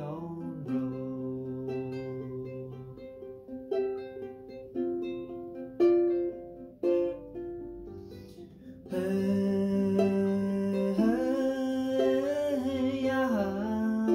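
Ukulele fingerpicked, a line of plucked notes ringing over held lower strings. About nine seconds in, a man's singing voice comes in over the playing and the music gets louder.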